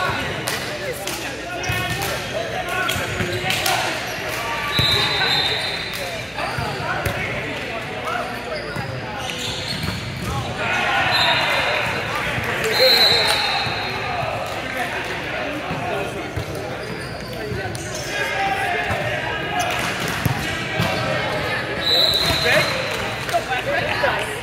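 Voices of players and spectators talking and calling out in a large, echoing gym, over knocks of a ball bouncing on the court. Several short high squeaks sound about five seconds in, around eleven to thirteen seconds, and again near the end.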